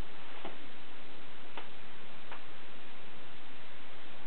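Plastic bubble wrap being handled by hand, giving three short sharp pops over a steady background hiss.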